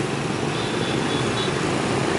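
Street traffic: motorbike engines running past with a steady hum and road noise.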